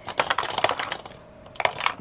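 Lipstick tubes clicking and clattering against one another and the clear acrylic organizer as they are picked out and set down. It is a quick run of clicks, a short pause, then a few more clicks near the end.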